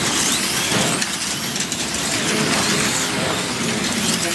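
Electric motors of wing-class slot cars whining as they race round the track, several high whines gliding up and down in pitch over a steady noise of the cars running in the slots.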